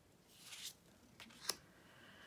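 Tarot cards being slid over one another and laid down: a soft swish of card on card, then a single sharp tap about a second and a half in.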